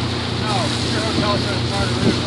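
A boat's engine running with a steady low hum, under wind on the microphone and the rush of water past the hull, with faint voices chattering in the background.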